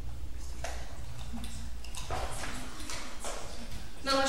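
Light clicks and clinks of a glass test tube and bottle being handled at a lab bench, about six in four seconds, over a steady low hum.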